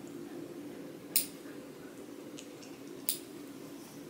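Nail clippers cutting a puppy's toenails: two sharp clips, about a second in and about three seconds in, with a few fainter ticks between.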